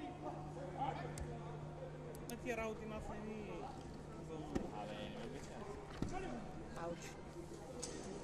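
Several sharp thuds from taekwondo sparring, kicks landing and feet striking the mat, over voices in a sports hall and a steady low hum.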